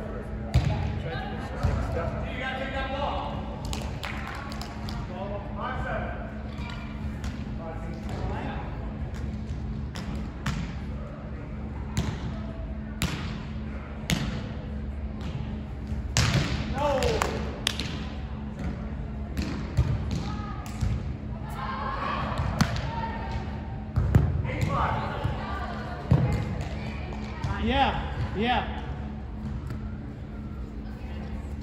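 Indistinct voices in a large hall, with a sharp smack of a volleyball being hit every few seconds and a steady low hum underneath.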